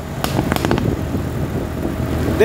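A moving vehicle heard from on board: the engine and road make a steady low drone, with a few short knocks about half a second in.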